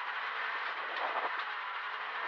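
Rally car engine and gravel road noise heard inside the cabin as the car drives at speed on a dirt stage, with a few light ticks about a second in.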